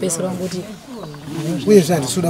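A person's voice in animated, exclaiming talk, with a pitch that swoops up and down, loudest in a drawn-out burst near the end.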